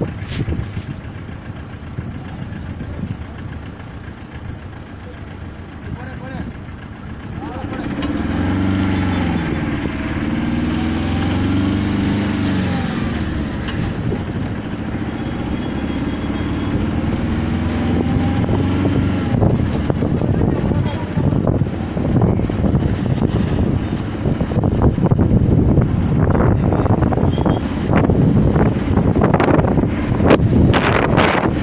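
Engine of the vehicle carrying the camera, running on the move, its pitch slowly rising and falling with speed from about a quarter of the way in. In the second half, wind buffets the microphone more and more.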